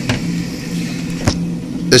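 A steady low hum, with a few light knocks as the acrylic reactor and its parts are handled.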